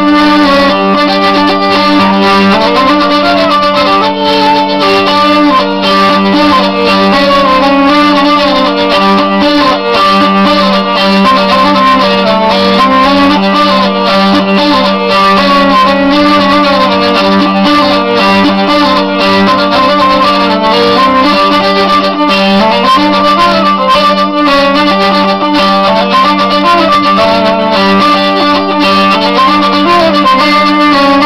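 Hurdy-gurdy playing a tune: steady drone strings sound one unchanging low note under a moving melody on the keyed melody strings.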